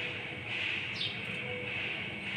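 A steady hiss, with one short, falling bird chirp about halfway through.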